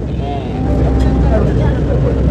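Steady low rumble aboard a moving river tour boat, engine and passing air, with faint voices in the background.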